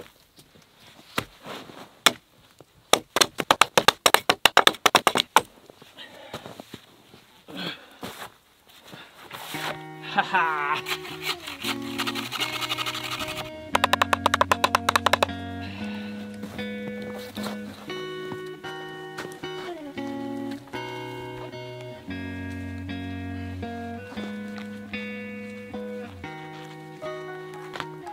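A quick run of hatchet strikes on wooden poles during roughly the first five seconds, then background music with sustained notes from about ten seconds in to the end.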